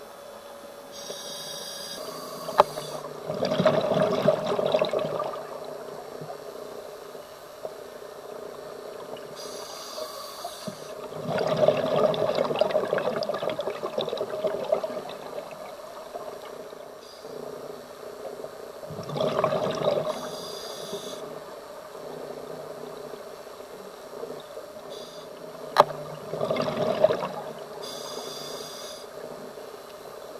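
Scuba diver breathing through a regulator underwater: a thin hiss of each inhalation, then a burbling rush of exhaust bubbles, four breaths about seven seconds apart. Two sharp clicks, the louder one near the end.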